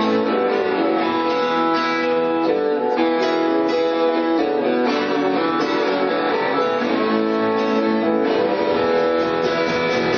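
Live rock band playing a guitar-led instrumental passage with no singing, steady and full throughout.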